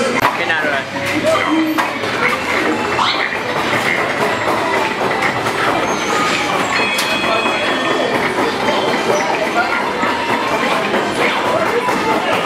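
Big Bass Wheel arcade game's prize wheel spinning and coming to a stop, with a run of clicking, under the loud steady din of a busy arcade with voices.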